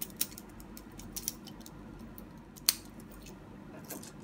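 Plastic and diecast parts of a Diaclone Dia-Battles combining-robot toy clicking as the jets are handled and fitted. There are a few separate sharp clicks, the loudest about two-thirds of the way in.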